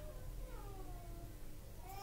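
A single faint, high-pitched call lasting about a second, falling in pitch.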